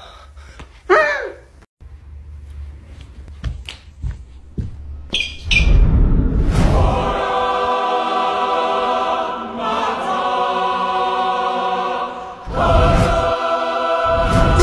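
Background music: a long held chord of choir-like voices comes in about halfway through and runs on with a short break. Before it there is a brief sliding vocal sound and a few knocks.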